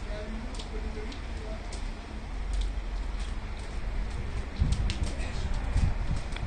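Open-air ambience: wind rumbling on the microphone, swelling near the end, with faint distant voices in the background.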